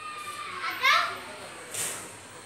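A young child's high voice: a drawn-out high note, then a louder cry with a rising pitch about a second in.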